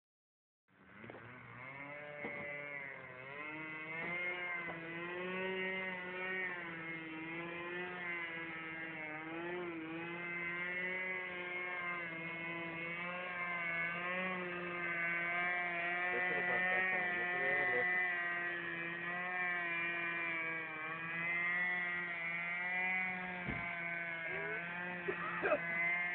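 Radio-controlled model airplane flying, its motor giving a steady buzz whose pitch wavers up and down as the plane moves about.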